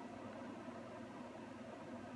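Faint steady room noise: a low hum under an even hiss, with no distinct sound.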